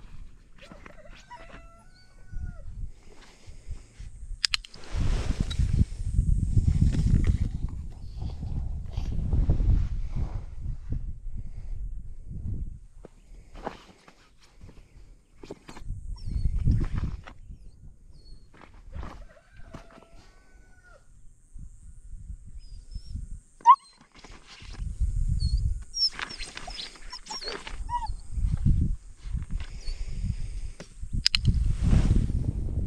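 Low rumble on the microphone that comes and goes, with a few faint short chirps, and one sharp click about two-thirds of the way in: a dog-training clicker marking the puppy's behaviour.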